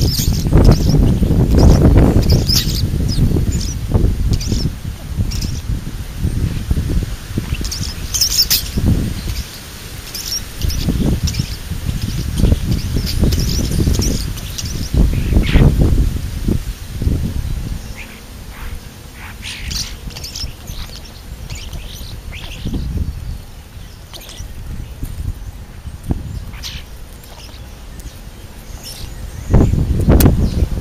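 Songbirds, among them European starlings, chirping in short high calls scattered throughout, over low thumps and rustling close to the microphone that come and go in surges.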